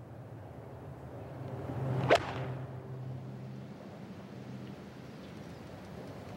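Golf iron shot from the fairway: a swish of the downswing that swells, then a single sharp crack of the clubface striking the ball about two seconds in, over faint open-air ambience.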